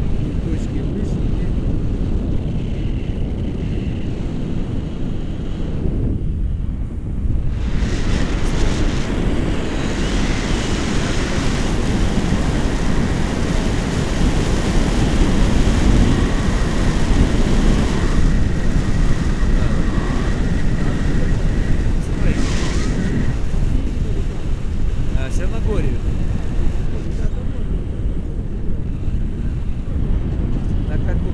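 Airflow buffeting the microphone of a camera on a paraglider in flight: a loud, steady rushing that grows louder and hissier from about a quarter of the way in until near the end.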